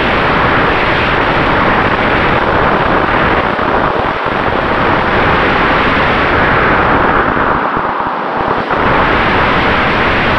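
Steady rush of wind over the microphone of a camera on an electric sailplane in flight, with its brushless motor and folding propeller running under power.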